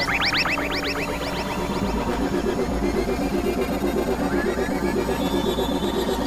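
Dense layered electronic music: a steady low drone with a fast pulsing throb under it, and in the first couple of seconds a run of quick high chirping glides, about six a second, that fades away.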